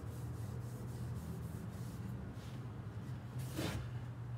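Rag rubbing finish onto a small wooden block in quick, faint, regular strokes over the first couple of seconds, over a steady low hum. A short, louder rush of noise comes near the end.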